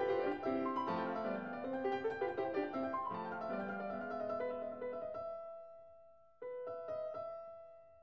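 Background piano music: a quick run of notes, then a held chord that fades away, and a new chord struck about six and a half seconds in that fades in turn.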